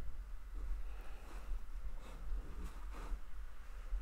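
Small wood lathe running with a steady low hum, while a micro turning tool scrapes faintly and intermittently at a spinning cherry handle.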